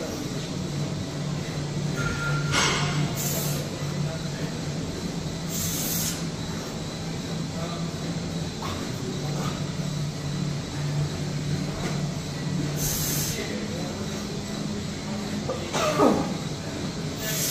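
Steady low droning hum of gym background noise, with a few short hissing bursts about three and six seconds in and again near the end.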